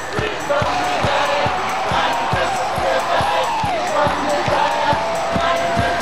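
A live song by street musicians: a voice singing a melody over a steady, fast thumping beat.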